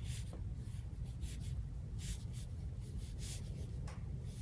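A large Chinese painting brush (a Big Full Moon brush) loaded with ink, dabbing and stroking on Pi rice paper: about ten short, soft swishes of bristles on paper, over a steady low room hum.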